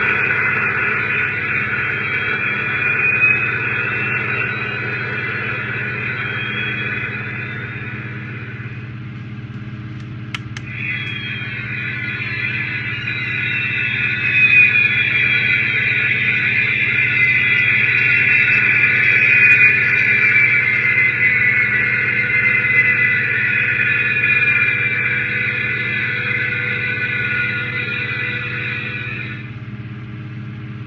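Electronic Space: 1999 launch pad model playing its built-in Eagle engine sound effect through a small speaker. A steady low hum runs under a high whine. The whine thins out about a third of the way in, then comes back with slowly falling tones.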